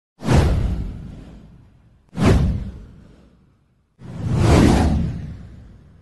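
Three whoosh sound effects for a title-card intro, about two seconds apart. Each sweeps in with a deep low rumble and fades away; the first two hit suddenly, and the third swells in more gradually.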